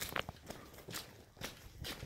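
Footsteps of a person walking at about two steps a second.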